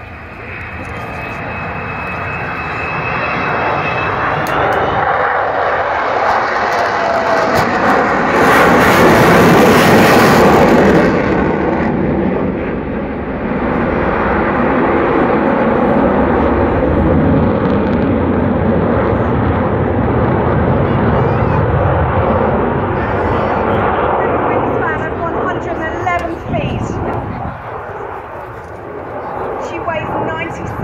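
Avro Vulcan XH558's four Rolls-Royce Olympus jet engines on a low pass: a high whine, the Vulcan howl, rising slightly in pitch over the first few seconds, then a loud jet roar that swells to its loudest about nine to eleven seconds in. The roar stays loud for a long stretch and fades over the last few seconds.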